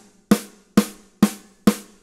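Single rim shots on a 6.5x14 copper snare drum, struck about twice a second at an even pace. There are four sharp cracks, each ringing briefly.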